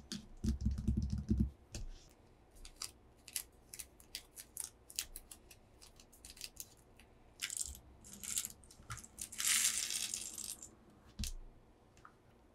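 Close-miked ASMR hand sounds: a quick run of heavy soft thumps from fingertips tapping on paper over a table, then many sharp fingernail taps and clicks. Near the end come rattling, clinking bursts, the longest lasting about a second, from small glass gem cabochons being handled.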